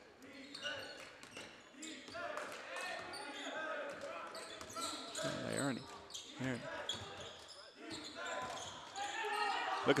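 A basketball being dribbled on a hardwood gym floor during play, a scatter of short bounces, with voices of players and spectators echoing in the gym.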